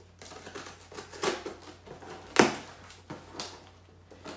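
Cardboard shipping box being opened by hand: scraping and tearing of the tape and cardboard flaps in several short bursts, the loudest a sharp rip about two and a half seconds in.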